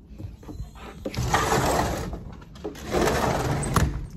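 Sliding glass patio door rolling along its track twice, each run about a second long.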